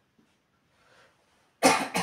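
A man coughs twice in quick succession near the end; the first cough is the longer and louder. Before that it is nearly silent.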